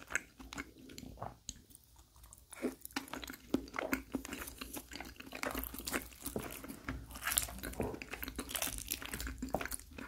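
Close-miked chewing of baked lasagna: a steady run of wet mouth clicks and smacks, briefly sparser about two seconds in and denser in the second half.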